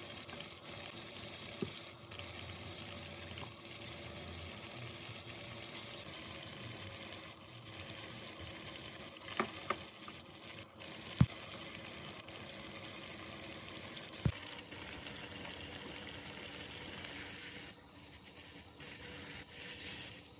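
Chicken livers and potatoes sizzling and simmering in a pan of sauce, a steady frying hiss. A metal spoon knocks against the pan a few times, the sharpest knock about eleven seconds in.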